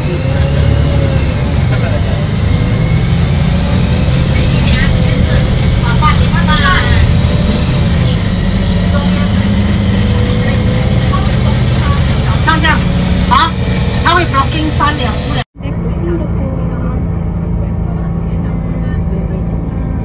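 Engine and road noise inside a moving bus, with scattered voices now and then. The sound drops out for an instant about three-quarters of the way through, then the steady rumble resumes.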